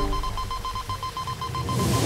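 Soundtrack sound effects: a rapid pulsing electronic beep over low background music. Near the end a whoosh rises, and the full music swells back in.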